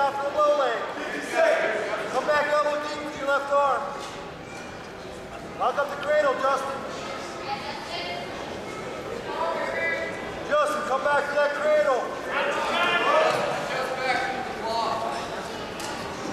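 People shouting during a wrestling bout, in short loud bursts with quieter gaps between, as several voices call out.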